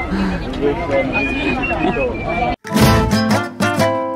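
Chatter of voices in a busy market crowd, cut off abruptly about two and a half seconds in. Plucked acoustic guitar music starts straight after.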